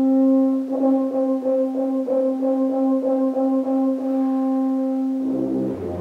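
Tuba-euphonium ensemble playing: one held brass note with rapid repeated notes over it. About five seconds in, the full ensemble comes in with low chords.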